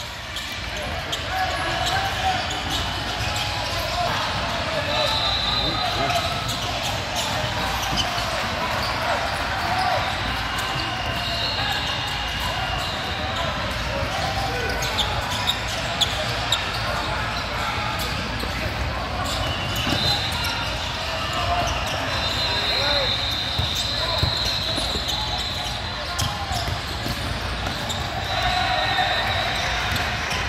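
Basketball game sounds: the ball bouncing on the court, a few high sneaker squeaks, and a steady background of players' and spectators' voices around the hall.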